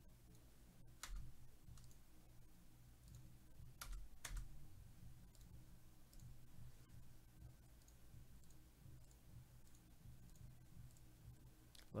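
Near silence with a few computer mouse clicks: one about a second in and two close together about four seconds in, over a faint steady hum.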